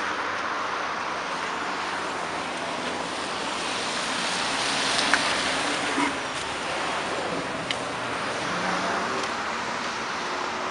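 Steady road traffic noise, swelling a little about halfway through as a car passes, with a few faint clicks.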